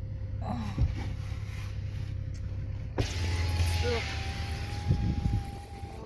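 A car's electric power window motor lowering the glass: a click about halfway in, then a steady whine for about three seconds as outside noise comes in, over the low hum of the idling engine.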